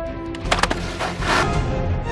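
Background music over a sharp snap, about half a second in, as a large wooden slingshot rifle is shot, followed by a short rushing burst of noise about a second in.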